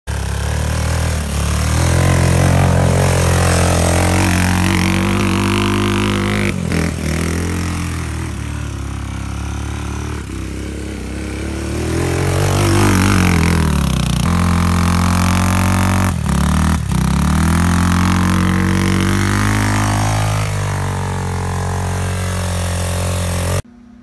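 ATV (four-wheeler) engine revving up and down as it is ridden through snow, with a few brief cut-outs, stopping suddenly just before the end.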